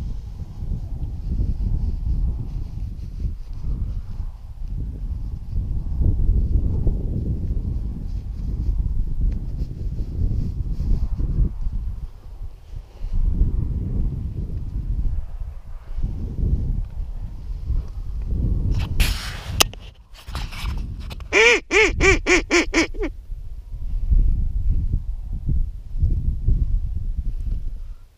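Wind buffeting the microphone, with a short, rapid run of quacks blown on a duck call about 21 seconds in. The call is sticking badly, which the hunter puts down to its two reeds having glued together.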